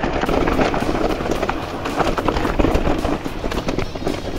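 Husqvarna Hard Cross 2 electric mountain bike descending a loose rocky trail: tyres crunching over stones and gravel, with rapid irregular clicks and knocks as the bike rattles over the rocks, over a steady low rumble.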